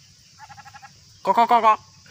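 A short, quavering bleat of about half a second, a little past the middle, with a fainter pulsed call just before it.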